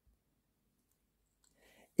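Near silence: room tone, with a faint, brief sound just before speech resumes near the end.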